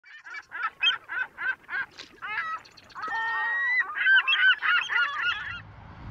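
Loud honking bird calls, a rapid run of short calls about four a second, then a busier overlapping chorus that stops about five and a half seconds in.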